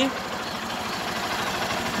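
Honda CG 150 Titan's single-cylinder four-stroke engine idling steadily, its firing pulses even.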